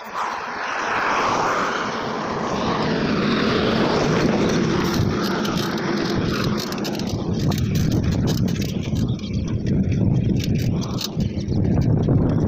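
Wind buffeting the phone's microphone as a bicycle is ridden at speed on a paved road, a steady low rumble that comes in suddenly at the start.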